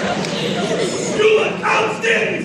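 A man's voice shouting short, barked yells over a background murmur of crowd voices; the yells grow louder about a second in.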